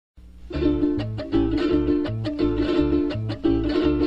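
Instrumental opening of a Zulian gaita: a cuatro strummed in a steady rhythm over a low bass line alternating between two notes, with percussion strokes, the whole band coming in about half a second in.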